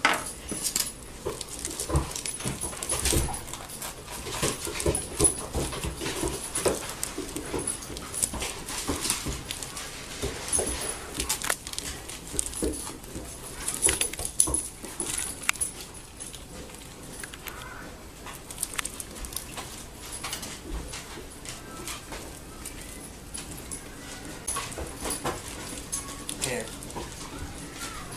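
A pet dog making small whining sounds over scattered knocks and rustles as plastic-wrapped sausage rolls are cut open and handled at an electric skillet.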